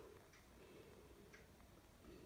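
Near silence: room tone with two faint ticks about a second apart.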